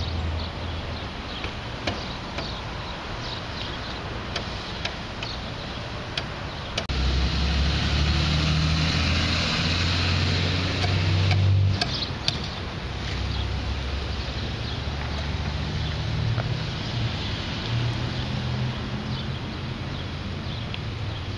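Vehicle engine and road noise while driving along a highway, the low engine hum shifting in pitch a few times. A box truck passes close alongside, its noise the loudest part of the sound from about seven to twelve seconds in.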